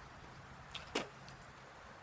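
A faint background hush broken by a small tick and then one short, sharp click-like sound about a second in.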